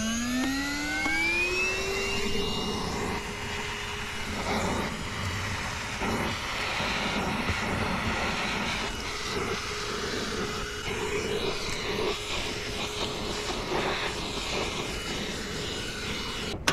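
A Giraffe Tools 12-volt handheld car vacuum spinning up after being switched on, its motor whine rising in pitch for about two seconds. It then runs at a steady pitch with a rush of suction air as the nozzle works over carpet.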